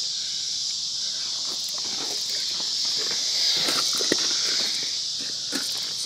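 Steady high-pitched chorus of insects, swelling a little near the middle, with a few faint scattered clicks and taps.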